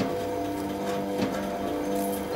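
Cartoon machinery sound effect: a steady mechanical hum from running gears, with a few sharp clicks.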